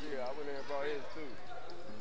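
Faint voices and court sounds from a basketball game in a gym.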